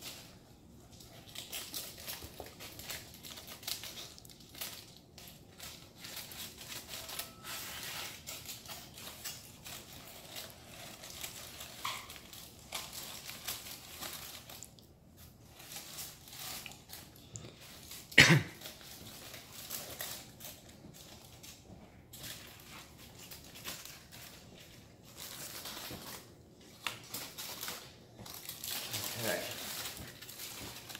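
Aluminium foil crinkling and rustling in irregular bursts as it is snipped open with kitchen scissors and pulled back from a smoked brisket in a metal roasting pan. One sharp knock about two-thirds of the way through is the loudest sound.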